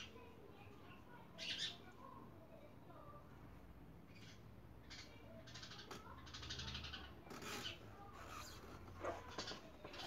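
Faint scattered clicks and scrapes of hand work as a compression tester's hose is threaded into a spark plug hole on a Chevy 1.6 engine, a short scrape about a second and a half in being the most noticeable.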